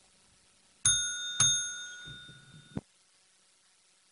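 Two bell-like chime strikes about half a second apart, each ringing on with several clear high pitches, then cut off abruptly.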